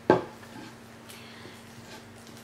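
A foil-wrapped chocolate egg set down on a hard surface: one sharp knock just after the start, followed by faint rustling.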